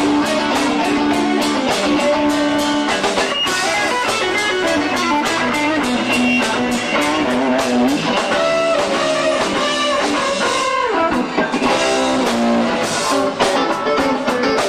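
Live rock band playing an instrumental passage: a lead electric guitar line of single notes over drums and a second guitar, with a bent note about ten seconds in.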